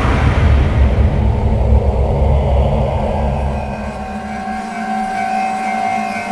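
A sudden deep boom followed by a heavy low rumble that fades over about three seconds, over a steady droning music bed. Higher sustained tones swell in near the middle.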